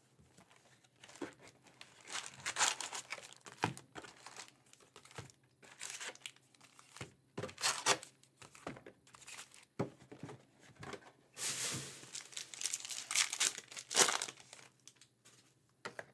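Trading-card pack wrappers being handled, torn open and crinkled in irregular rustling bursts, busiest and loudest in the last few seconds.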